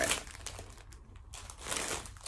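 Plastic packaging crinkling as it is handled. A rustle at the start, a quieter patch with small crackles, then more rustling near the end.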